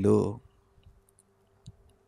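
A man's voice finishes a word of a Telugu sermon, then a pause in which only a few faint, small clicks and a faint steady hum are heard.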